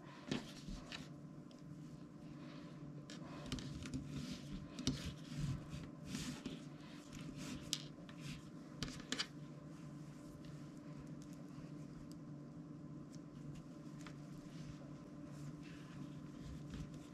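Faint rustling and scraping of nylon paracord being pulled tight through a weave by hand. Short scrapes come scattered through roughly the first ten seconds over a steady low hum.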